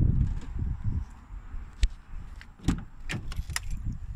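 A car door being opened: several sharp clicks from the latch and handle, after a low rumble in the first second.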